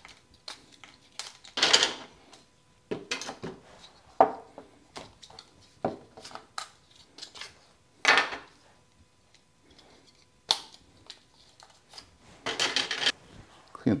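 Hard plastic 3D-printed mold-box walls being slid off a freshly cast plaster block and handled on a tabletop: scattered clicks and knocks with a few short scraping rubs.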